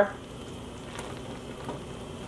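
Quiet, steady hiss and sizzle of a hot dyebath simmering in a stainless steel steam pan over a stove burner.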